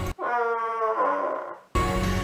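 A single drawn-out, dog-like whining call about a second and a half long, sinking slightly in pitch, edited in with all other sound cut out around it.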